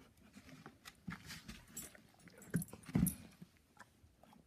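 Alaskan malamute making a few short, low vocal sounds, the two loudest close together near the end, among light scuffs and clicks.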